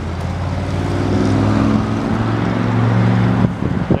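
An Edsel's engine running as the car drives away, swelling in level for about three seconds, then dropping away suddenly near the end.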